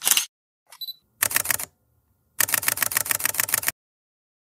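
Camera sound effects: a short high focus beep followed by a shutter click at the start, another beep and a short run of clicks about a second in, then a rapid burst of shutter clicks, about ten a second, for over a second before stopping.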